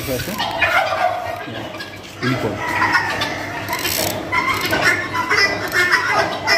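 A flock of domestic helmeted guineafowl calling, with many overlapping repeated calls and a brief lull about two seconds in.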